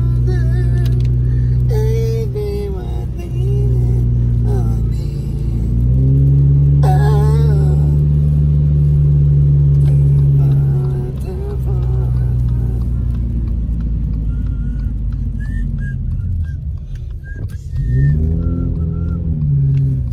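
Music with a heavy, sustained bass line and a voice playing on a car stereo, heard inside the cabin of a moving car over low engine and road rumble.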